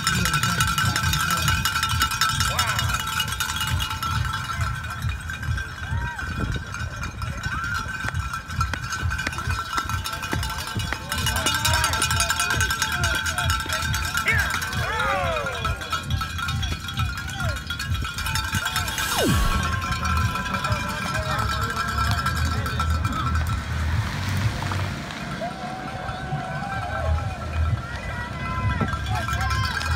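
Spectators' cowbells ringing continuously in fast, uneven clanging, with distant shouts mixed in.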